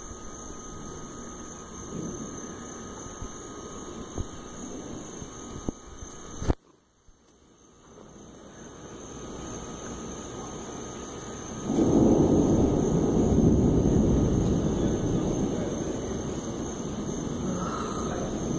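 A long low rumble of thunder that begins suddenly about two-thirds of the way through and slowly dies away, over a steady background hiss with a few small clicks.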